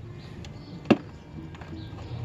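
A single sharp plastic click about a second in, with a fainter tap just before it, as a car's plastic tail-light assembly and its wiring are handled.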